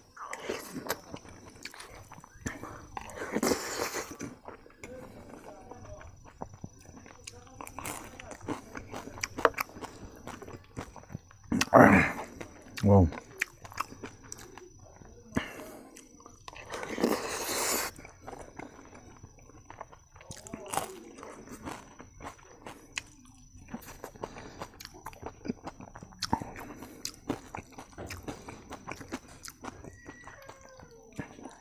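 Close-up chewing and mouth sounds of a person eating rice with dal and fried vegetables from a spoon, with many small wet clicks and a few louder short sounds about four, twelve and seventeen seconds in.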